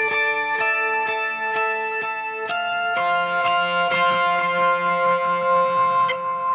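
Electric guitar with overdrive playing a slow melodic line of held notes, picked lightly and stepping through several pitches over the first three seconds, then settling on one long sustained note.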